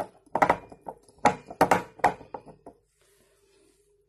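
Glass laboratory flasks being handled: a quick, irregular run of sharp clicks and taps over the first three seconds or so. A faint steady hum runs underneath.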